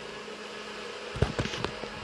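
Steady background hum for the first second. Then a run of short thumps and rustles as the phone and the plush toys are handled.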